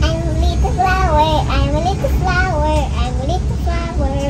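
A child singing a short melody with sliding, wavering notes, over a steady low rumble.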